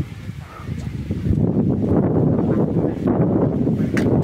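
Wind buffeting a phone microphone outdoors: an uneven low rumble that gets louder about a second in.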